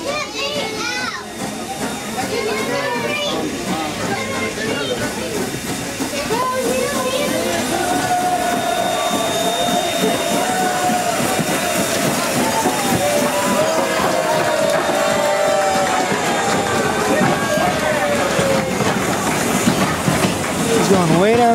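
Strasburg Rail Road steam locomotive No. 90, a 2-10-0, running light past the train at close range with a steady hiss of steam as it runs around to couple onto the other end. Indistinct chatter of passengers' voices throughout.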